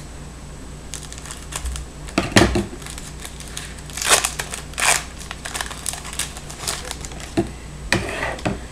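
A foil trading-card pack snipped with scissors and then pulled open by hand, the wrapper crinkling and tearing in short bursts, strongest about four and five seconds in. A brief thump about two and a half seconds in.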